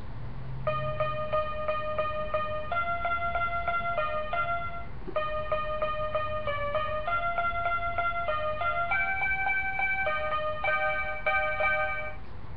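Small toy electronic keyboard playing a simple tune in short, quickly repeated notes, about three or four a second, in phrases with brief pauses between them; the notes start just under a second in.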